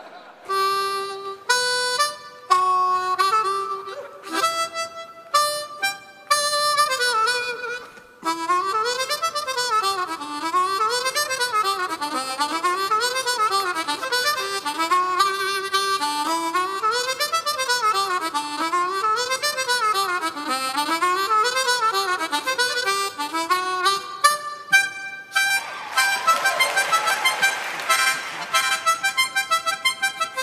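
Solo harmonica played into a microphone: a few separate held notes, then fast runs sweeping up and down the scale, ending in quick repeated notes.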